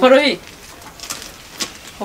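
A woman's voice ending a phrase with a falling pitch, then a pause of faint background with a couple of soft clicks.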